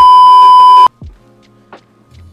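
A loud, steady electronic test-tone beep, the kind played with TV colour bars, held for about a second and cutting off suddenly; faint background music carries on after it.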